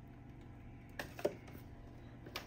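Faint handling sounds: a few light clicks and taps around a second in and again near the end, from the feeding tongs and the live rat against the plastic rack tub, over a low steady room hum.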